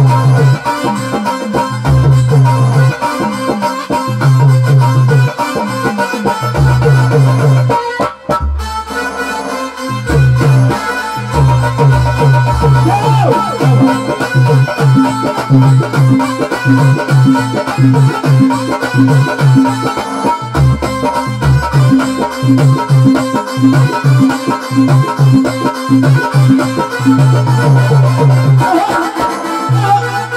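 Instrumental passage of live Indian devotional bhajan music with no singing: an electronic keyboard plays a reedy, harmonium-like melody over a repeating low bass-note pattern. The music briefly drops out about eight seconds in.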